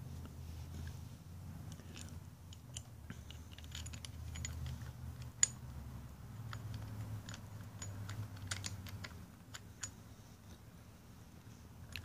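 Faint, scattered small metallic clicks and taps from fingers handling the full-fuel stopper cap and its screws on a Bosch MW diesel injection pump. A sharper click comes about halfway through, over a low steady hum.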